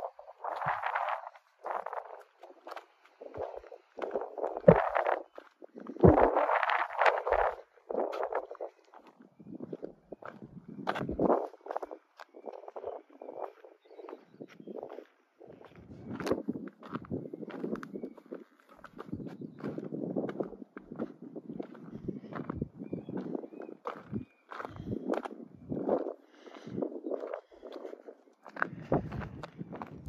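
Footsteps on a rocky dirt and gravel trail: an uneven run of crunches and scuffs, with a few sharper knocks, louder in the first several seconds.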